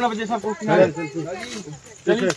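Men's voices talking, only speech.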